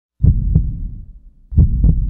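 Deep low thumps in a slow heartbeat pattern: two pairs of beats about 1.3 seconds apart, each beat followed by a short low rumble.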